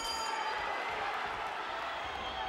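Boxing ring bell struck once to start the first round, ringing out and fading over about a second, over a cheering crowd.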